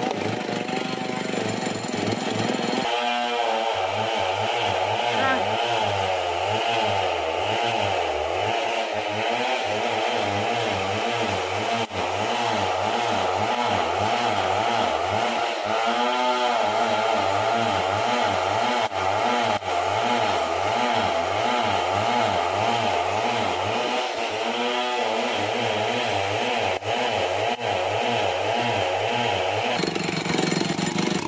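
Stihl chainsaw engine running continuously, its pitch wavering up and down, with a few brief rises in revs.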